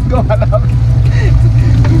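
Yamaha 50 HP two-stroke outboard motor running steadily, driving the boat under way, with a short laugh over it near the start.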